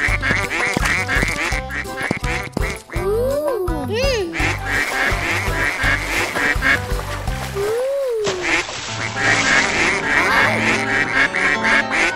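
Cartoon ducklings quacking again and again over bouncy background music with a steady beat, with a few short sliding tones that rise and fall.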